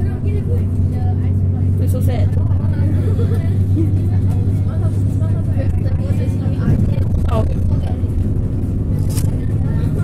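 Isuzu bus's diesel engine running steadily under way, a low drone heard from inside the cabin near the driver's seat.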